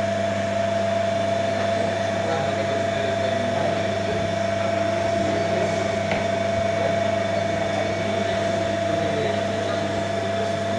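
Single-phase capacitor induction motor running steadily: a constant low electrical hum with a steady higher whine above it.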